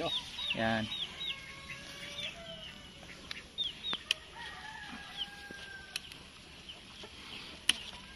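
Free-range native chickens calling: a run of short, high, falling peeps repeated every fraction of a second, with a rooster crowing in the distance. A few sharp clicks sound over them.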